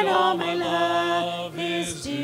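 A small group of singers singing a gospel hymn into microphones, holding long notes.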